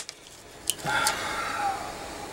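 An AA cell being pulled out of a plastic battery holder: a sharp click as it leaves the contacts, a second click less than a second later, then about a second of softer handling noise.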